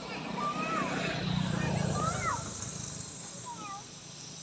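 About four short whistled calls, each arching up and down in pitch, over a low rumble that swells in the middle and fades near the end.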